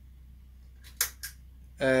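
A sharp click about a second in, with a fainter tick just before it and another just after, over a low steady hum.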